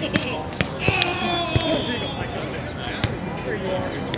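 Volleyball being hit during a beach volleyball rally: a series of sharp slaps of hands and forearms on the ball. Players' voices call out about a second in.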